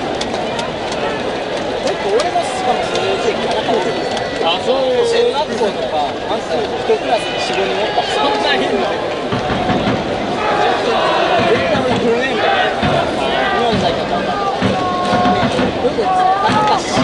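Stadium crowd chattering, many voices talking over one another with no single voice standing out; some low thumps come in the second half.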